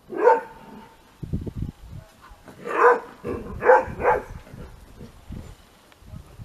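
A dog barking while two dogs play-fight: one bark at the start, then three more in quick succession a couple of seconds later.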